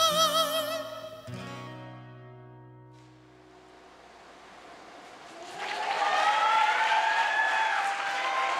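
A male singer's gugak-style closing note, held with a wide vibrato over a sustained instrumental chord, ends about a second in, and the chord fades away. After a short lull the audience breaks into applause and cheering at about five and a half seconds.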